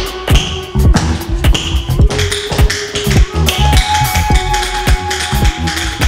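Tap dancing: the metal taps on shoes strike a hard floor in quick, irregular clusters of sharp clicks. Music with deep bass and a held note plays underneath.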